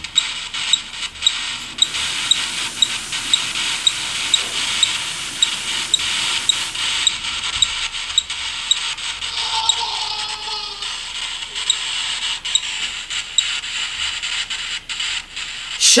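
A bathroom sink tap running on its own, heard as a steady rushing hiss that thins about seven seconds in. Faint regular electronic ticks from a phone ghost-detector app come about two or three times a second.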